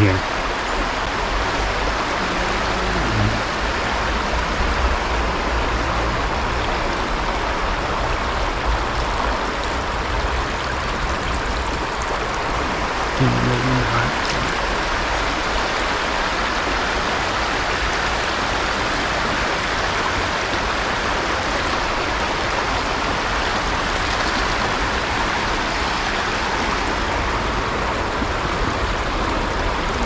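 Steady rush of a shallow, fast river running over stones and riffles.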